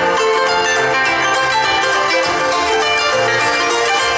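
Harp played solo: a continuous stream of plucked notes over repeated low bass notes.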